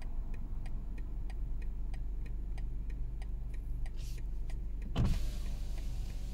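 A car idling, heard from inside its cabin: a steady low rumble with a light regular ticking about four times a second. A brief knock comes about five seconds in.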